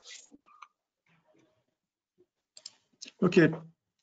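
A near-silent pause on a webinar audio line, broken by a few faint, short clicks and brief noises. Near the end a man's voice says "Ok".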